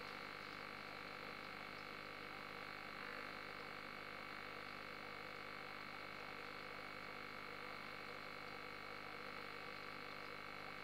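Steady, unchanging hum with several constant high-pitched whining tones, the kind of sound running aquarium equipment makes.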